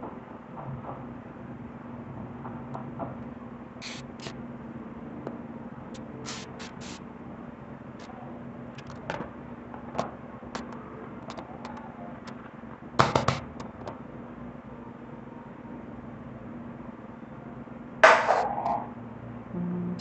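A utensil clicking and scraping against an aluminium tube cake pan as the cake is loosened, then plastic and metal knocking as a plastic container is fitted over the pan and the pan is turned over, with a cluster of sharp knocks about two-thirds through and the loudest knock and rattle near the end. A steady low hum runs underneath.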